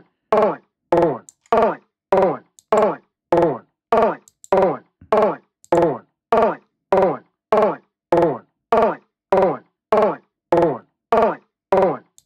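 Hammerhead Rhythm Station drum-machine app on an iPad retriggering a chopped vocal sample ('get going') about every 0.6 s. Each hit is a short spoken syllable that falls in pitch, repeating in a steady rhythm.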